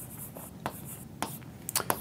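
Hand-writing on a surface: a quick, uneven series of short pen scratches and taps as words are written out.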